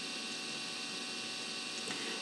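Steady electrical hum and hiss, with a few faint steady tones and no change throughout.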